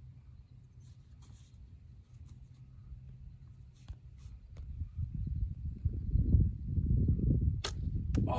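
Slingshot shots: several faint snaps in the first half and a sharper one near the end, under wind buffeting the microphone that grows loud from about halfway.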